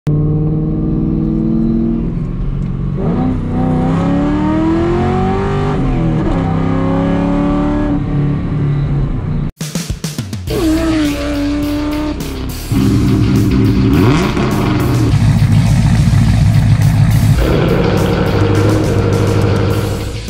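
A car engine revving, its pitch climbing and then falling away, mixed with music. There is a brief dropout about ten seconds in, then the engine and music carry on, loud.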